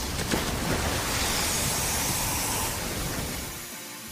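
Cartoon water-blast sound effect: a high-pressure jet of water gushing in a steady rushing spray, fading out near the end.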